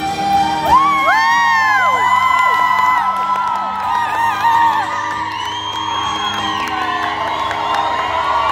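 Live pop-rock singer holding long, high sung notes over strummed acoustic guitar, with audience members whooping over the music in several rising-and-falling cries, most about a second in and again around the middle.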